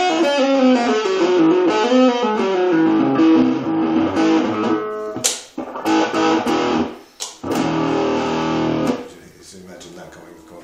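Red semi-hollow-body electric guitar played clean through a small Marshall Reverb 12 transistor combo amp. A melody with gliding notes gives way to held chords and a few sharp string hits. The playing stops about nine seconds in, leaving a faint ringing note.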